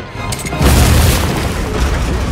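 A deep, rumbling boom that swells in and becomes loud about half a second in, then holds as a heavy rumble, with film score music underneath.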